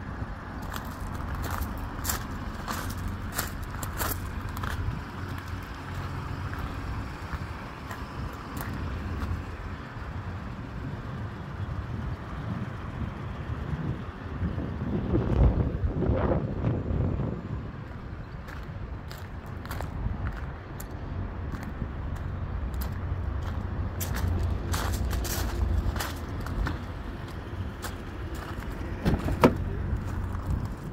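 Footsteps crunching on gravel over a low outdoor rumble. The rumble swells for a few seconds around the middle, and there is a sharp click near the end as a car door is opened.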